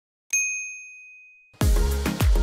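A single bright notification-bell ding from the subscribe animation, ringing clear and fading away over about a second. Then music with a heavy bass beat starts abruptly about one and a half seconds in.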